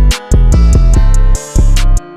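Instrumental trap-style hip-hop beat: heavy 808 bass notes that cut out briefly between phrases, sharp snare or clap hits and hi-hats over a sustained melodic loop.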